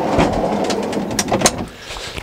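A loaded fridge slide with a Dometic 95-litre fridge being pushed back into the trailer compartment: a steady rolling noise along the slide rails, with a couple of sharp clicks near the end as it stops.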